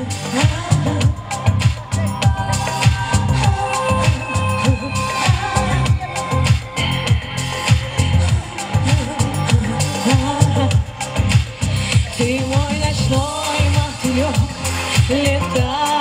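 A pop song played loud over a PA system: a backing track with a steady, thumping beat and bass, and a woman singing into a microphone over it, her voice clearest in the second half.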